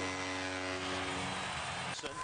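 A steady droning tone with several overtones over an even crowd-like hiss; the tone fades out about a second and a half in, leaving the hiss.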